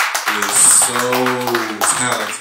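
A small audience clapping, with a man's long, drawn-out call over the applause.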